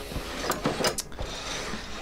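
A few light clicks and knocks of objects being handled and moved about, with two sharper ones around the middle.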